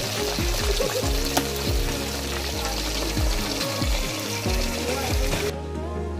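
Pieces of chicken deep-frying in a pot of hot oil, a steady sizzle, under background music. The sizzle cuts off shortly before the end while the music carries on.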